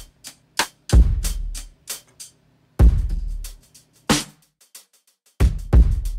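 Hip-hop drum pattern from Native Instruments' Rudiments drum library, played from a pad controller. Loud kick drums with long deep tails land about a second in, near three seconds, and twice close together near the end, with short sharp snare and hi-hat hits between them and brief gaps.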